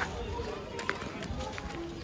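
Outdoor ambience: faint distant voices over a steady low rumble, with a few faint clicks.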